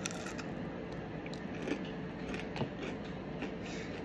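Biting into and chewing a crisp, air-fried plant-based cheeseburger: faint crunches and small scattered clicks over a steady background hum.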